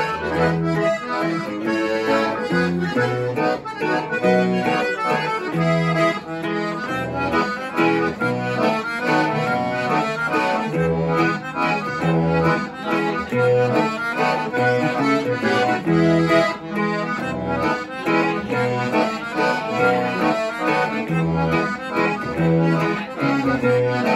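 Button accordion playing the melody of a mazurka, an instrumental Tex-Mex conjunto dance tune in triple time, over a bajo sexto strumming bass notes and chords in a steady pulse.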